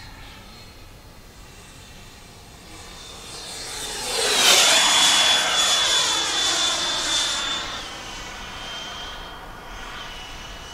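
120 mm electric ducted fan of an HSD Jets T-33 model jet on a full-speed pass: its rush and high whine build from about three seconds in and are loudest as it passes overhead halfway through. The whine drops in pitch as it goes by, then fades away.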